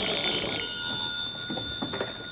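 Telephone bell ringing: one ring that stops about half a second in, its tone dying away slowly afterwards.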